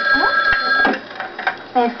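Electronic telephone ring: one short ring of steady high tones lasting under a second.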